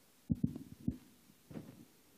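A few low, dull thumps: three close together in the first second and a softer one about a second and a half in.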